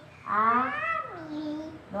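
A young girl's voice singing one long drawn-out syllable that rises and then falls in pitch, part of a chanted children's prayer.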